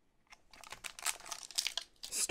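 Foil wrapper of a Pokémon Team Up booster pack crinkling and tearing as it is ripped open by hand. A rapid run of sharp crackles starts about half a second in.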